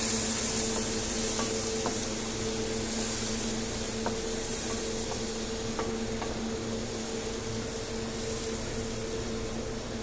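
Onion-garlic paste frying in hot oil in a kadhai, sizzling steadily while it is stirred with a wooden spatula, with a few light knocks of the spatula against the pan. A steady low hum runs underneath, and the sizzle slowly gets a little quieter.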